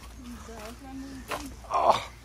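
A person talking, ending in a louder exclamation a little before the end.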